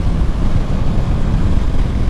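Wind rushing over the microphone on a Honda ST1100 Pan European motorcycle at road speed, with its V4 engine and tyre noise running steadily beneath.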